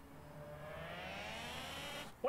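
A single pitched tone gliding slowly and steadily upward over a faint low hum, a rising sound effect or synth riser in the drama's soundtrack.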